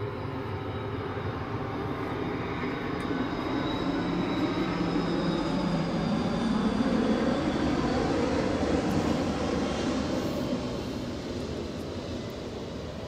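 An aircraft passing, heard as a rumble that builds to its loudest about seven to nine seconds in and then fades away.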